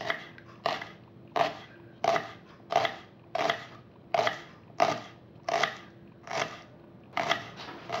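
Knife slicing through shallots onto a cutting board, a crisp cut roughly every two-thirds of a second, about a dozen cuts in a steady rhythm.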